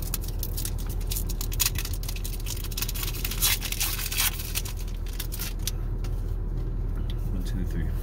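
Foil booster pack wrapper crinkling and tearing open, a dense run of sharp rustles for the first five seconds or so that then thins out. A steady low hum from inside the car cabin runs underneath.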